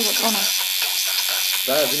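Electric tattoo machine buzzing steadily with a high-pitched whine as it works on the skin.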